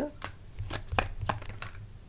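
A deck of tarot cards being hand-shuffled: a run of short, sharp card taps at irregular spacing, about half a dozen in two seconds, over a low steady hum.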